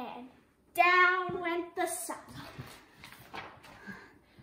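A voice holds one drawn-out vocal note for about a second, starting near the beginning, followed by soft, noisy rustling.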